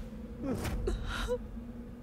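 A man's short, sharp breaths and gasps, several brief catches of breath, over a faint steady low tone.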